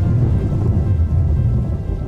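A deep, rolling thunder sound effect mixed with music, the rumble starting to fade near the end.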